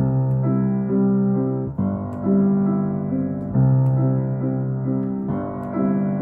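Steinway grand piano played: a phrase with low bass notes and chords struck about every two seconds, and upper notes moving between them. Each key is struck with the tension released right away, so the notes ring on and carry.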